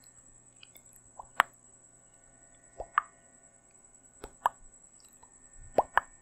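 Close-miked ASMR mouth sounds: wet pops and clicks from the lips and tongue, coming in four quick pairs about a second and a half apart. A faint steady high whine and low hum sit underneath.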